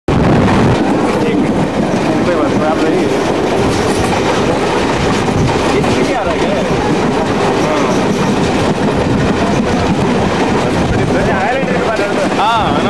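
Indian Railways passenger express train running over a long river bridge, heard from aboard a coach: a steady, loud rolling noise with the clatter of wheels on the rails, and indistinct voices in the background.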